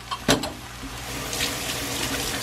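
Ground pork frying in a pan: a steady sizzling hiss that grows louder about a second in, after a brief knock near the start.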